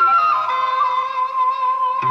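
Korean traditional instrument ensemble playing a folk-song melody: a short falling figure at the start settles into a long, steady held high note.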